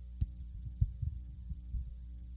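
Steady electrical hum from the chamber's sound system, with a sharp click and then several irregular low thumps as a gooseneck desk microphone is handled and adjusted.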